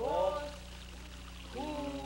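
A voice sounding two gliding notes, each falling in pitch: one at the start and a longer, held one from about one and a half seconds in, over a steady low hum.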